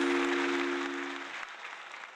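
Audience applauding over the final held chord of the song, which stops just over a second in. The applause then fades away.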